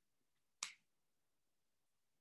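Near silence with one short, sharp click a little over half a second in.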